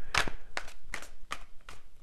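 A quick, irregular run of light, sharp clicks, about eight in two seconds.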